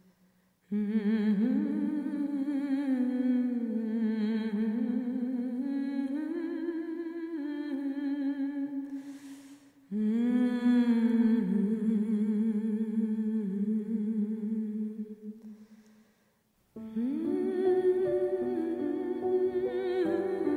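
A slow, wordless hummed melody with vibrato, sung in long phrases of several seconds with brief fades between them. Near the end a fuller accompaniment comes in beneath the voice.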